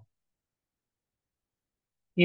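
Near silence: a pause in the lecture.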